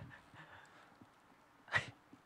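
A single quick breathy exhale close to the microphone about three-quarters of the way in, against faint background noise.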